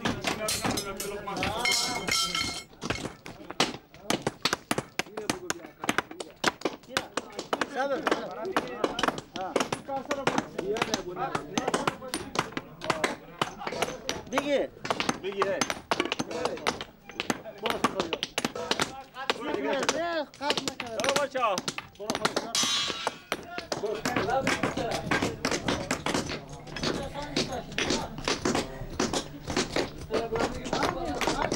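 Repeated knocks and clanks of a hammer and hand tools on steel reinforcing bar, with a ringing metallic clang about two seconds in and another bright ring later on.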